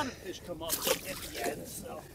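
Brief splashing and sloshing of shallow water as a largemouth bass is let go, with faint voices behind it.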